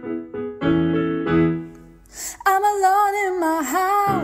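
Piano playing repeated chords in a steady rhythm. About halfway through, the piano drops out and a young female voice comes in, singing a long, wavering line.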